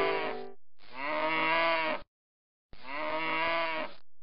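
A plucked chord rings out and fades at the start. Then a cow moos twice, each moo about a second long.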